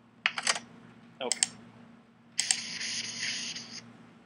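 Chalk on a chalkboard: a quick run of three or four sharp taps, then, about two and a half seconds in, a scraping stroke lasting over a second.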